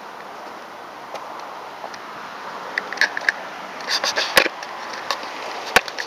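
Steady hiss of street traffic, with a run of sharp clicks and knocks from about three seconds in, the loudest near the end: a handheld camera being handled and set down on a concrete wall.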